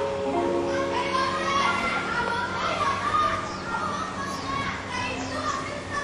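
A crowd of children chattering and calling out all at once, over background music with held notes.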